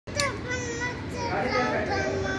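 Children's voices chattering and calling out, several overlapping, over a steady low background rumble.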